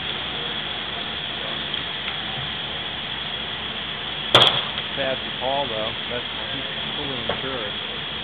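A single sharp bang about four seconds in, with a brief ringing tail, over a steady background hiss; faint voices follow.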